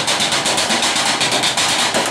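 Fast, steady drumming with sticks on metal trash cans: a dense run of sharp, clanging strikes from a street percussion group.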